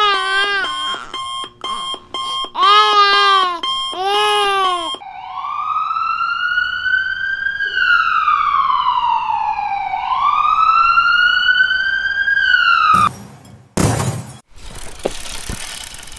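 Ambulance siren sound effect wailing, its pitch rising and falling slowly about three times, followed near the end by a sudden loud crash. Before the siren, a high cartoon voice wails for the first few seconds.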